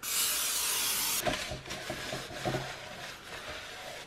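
Aerosol cooking spray hissing for about a second as it coats a fluted bundt pan. Then a paper towel rubs the grease around inside the pan, more quietly, with a few light knocks.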